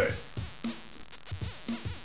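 Electronic drum loop playing through a DIY modular synth, with the third oscillator of a homemade triple oscillator sounding a short bass line. Its pitch is driven by the envelope extracted from the drum loop, so the notes move in rhythm with the drum hits.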